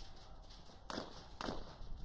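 Quiet outdoor background with two faint, short knocks about half a second apart, around the middle.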